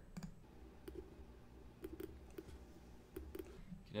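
A handful of faint, irregularly spaced clicks from a computer mouse button as straight lines are drawn in a paint program, over a low steady room hum.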